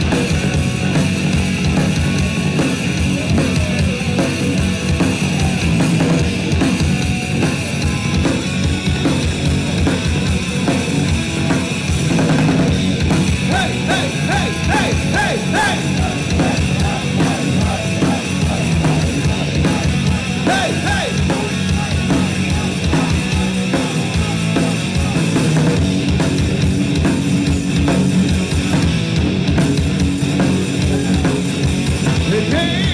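A heavy metal band playing live: distorted electric guitars and bass over a fast, steady drum-kit beat, loud and unbroken throughout.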